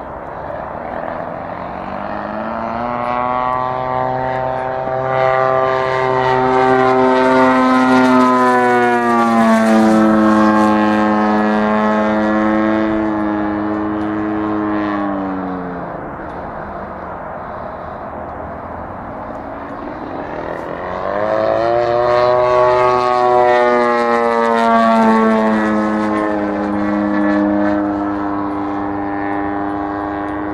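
Hangar 9 Extra-300X radio-controlled aerobatic plane with a GP-123 engine flying, its engine and propeller heard as one steady pitched note. The note swells and then slides down in pitch twice, about a quarter of the way in and again about three-quarters of the way in.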